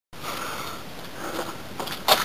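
A person breathing close to the microphone over a steady hiss, with two soft breaths or swells, one early and one past the middle.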